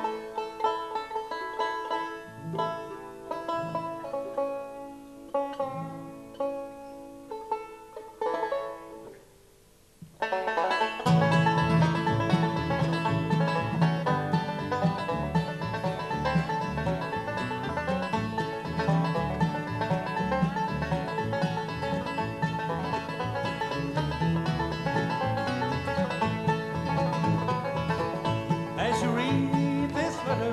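Live acoustic bluegrass band of five-string banjo, mandolin, acoustic guitar and upright bass. Sparser, quieter plucked-string playing for about the first ten seconds, then after a brief drop the full band comes in louder with a strong bass line, and a voice starts singing near the end.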